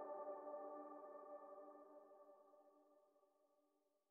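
Instrumental soundtrack music ending on a held chord of several steady tones that fade out, leaving silence from about two and a half seconds in.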